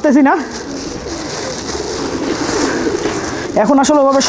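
Domestic pigeons cooing, several low wavering calls overlapping, between a man's words at the start and near the end.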